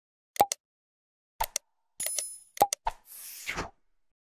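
Sound effects of a subscribe-button animation: several short clicks and pops in quick pairs, a bright bell-like ding about two seconds in, and a brief whoosh near the end.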